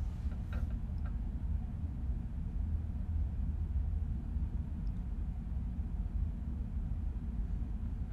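Steady low rumble of room tone with no speech, with a couple of faint clicks in the first second.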